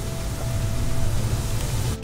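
Rice pilaf sizzling as it browns in butter in a pan, a steady hiss with a low hum beneath it.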